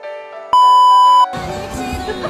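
Soft keyboard music, then a loud, steady electronic bleep lasting under a second that cuts off suddenly. A busy mix of music and voices follows straight after.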